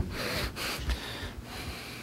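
A breath close to a desk microphone: a soft, breathy hiss lasting about a second and a half, fading out.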